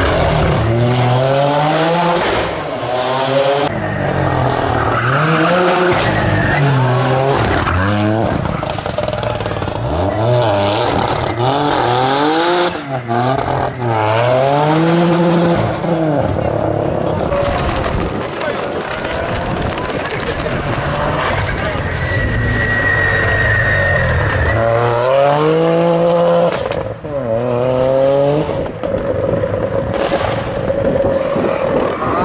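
Toyota GR Yaris rally car's turbocharged three-cylinder engine revving hard through the gears over several passes. The pitch climbs and drops again every second or two at the gear changes.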